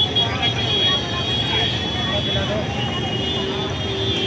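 Busy street noise: many people talking at once over traffic rumble, with a steady high whine throughout.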